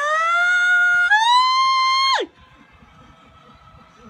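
A high-pitched voice holding one long note that rises, jumps higher about a second in, then slides sharply down and stops at about two seconds, followed by quiet with a faint hum.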